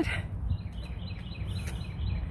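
Wind rumbling on the phone microphone outdoors, with a bird chirping a quick run of short falling notes from about half a second in.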